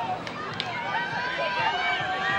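Several players and spectators shouting and calling out over each other during a field hockey attack on goal, with two sharp clacks in the first second.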